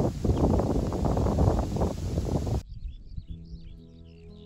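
Wind buffeting the microphone, then about two and a half seconds in it cuts off suddenly to soft ambient music with birds chirping.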